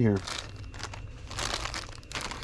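Clear plastic bags crinkling and rustling in irregular bursts as a hand rummages through a drawer full of bagged toys.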